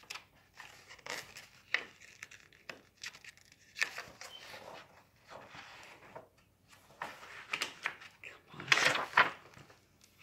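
Paper pages of a picture book rustling and crinkling as they are turned, in scattered short rustles with a louder rustle near the end.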